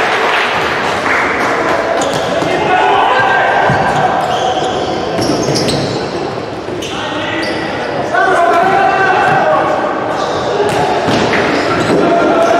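Indoor futsal play in an echoing sports hall: the ball is kicked and bounces on the wooden floor again and again, and players shout across the court.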